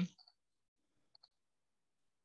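Faint computer mouse clicks: two quick pairs of clicks about a second apart, as a screen share is started.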